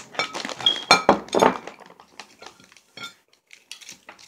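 Close-up clinking and clattering of small hard objects: a dense run of sharp, ringing clicks over the first two seconds, then a few scattered single clicks.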